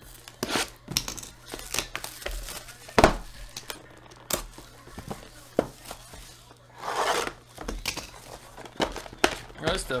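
Shrink-wrapped cardboard trading-card boxes being handled and unwrapped: plastic wrap tearing and crinkling among sharp knocks and taps of the boxes. There is a loud knock about three seconds in and a longer crinkling tear near seven seconds.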